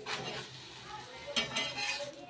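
A spatula scraping and knocking against a tawa as a roti is pressed and moved on the griddle. There are a few short clicks, the sharpest about one and a half seconds in.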